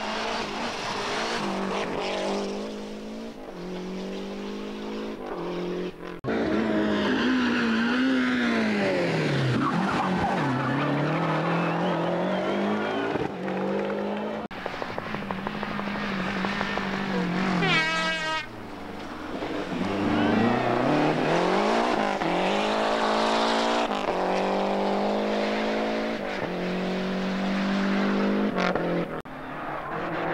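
Lancia Delta Group A rally car's turbocharged four-cylinder engine revving hard through gear changes as it passes, its pitch climbing and dropping again and again. A quick run of sharp pops comes about midway, and the sound changes abruptly twice where one pass is cut to the next.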